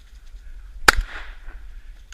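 A single gunshot from a hunting gun fired at a wild boar, about a second in, with a short echo trailing off after it.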